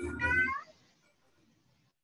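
A short, high call rising in pitch in the first half-second, then dead silence, as of a muted line on an online call.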